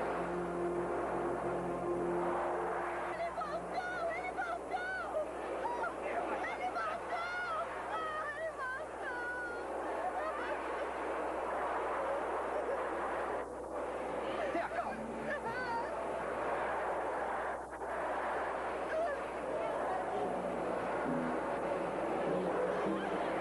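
Many people screaming and yelling in panic over dramatic film music, the cries wavering and overlapping, loudest in the first half.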